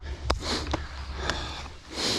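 Mountain bike rolling slowly over gravel: tyre crunch with a few sharp clicks and rattles from the bike, over a steady low wind rumble on the handlebar camera's microphone.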